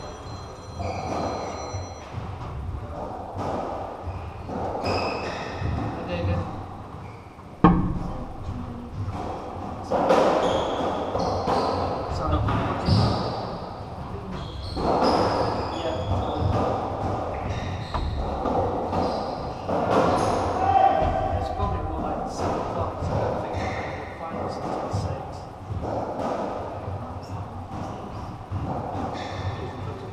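Racketball rally in a squash court: the ball is struck by racquets and hits the walls, each shot echoing in the enclosed court, with the loudest single hit about eight seconds in. Indistinct chatter from people nearby runs over it.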